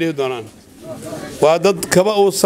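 A man's speech through a microphone, amplified. One phrase trails off with a falling pitch, there is a short pause, and he starts again about a second and a half in.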